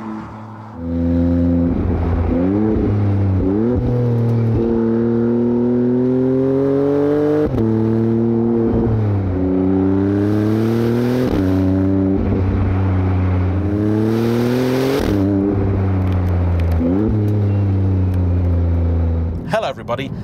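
Maserati MC20's twin-turbo V6 pulling hard through the gears. The pitch climbs steadily in each gear and drops sharply at each change, several times over.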